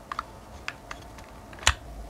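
Small plastic clicks from handling a pair of Xiaomi Mi True Wireless Earbuds Basic 2 in their open charging case, with one sharper click about one and a half seconds in as an earbud is pulled out of its slot.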